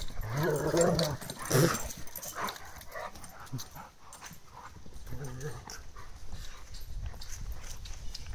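A Rottweiler and a Cane Corso play-fighting, vocalising loudest in the first second and a half and briefly again about five seconds in, with scuffling.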